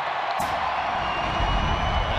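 A single sharp crack of a bat hitting a baseball, then a stadium crowd cheering the home run, swelling louder about a second and a half in.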